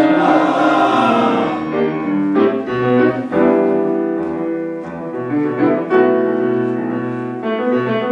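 Men's choir (tenors and basses) singing held chords with piano accompaniment, the piano's struck notes cutting in at intervals under the sustained voices.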